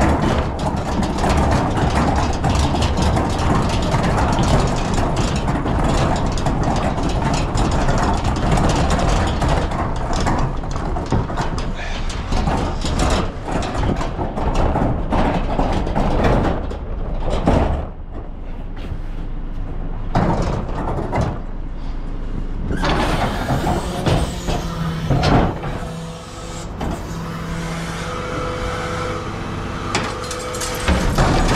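A large four-wheeled commercial wheelie bin being pushed over tarmac, its castors and body rattling and clattering. A refuse truck's engine runs behind it, heard as a steady hum in the last few seconds as the bin reaches the truck.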